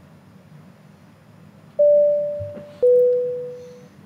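Two-note electronic chime for a channel's logo ident: a high note, then a slightly lower note about a second later, each ringing and fading, over a faint low hum.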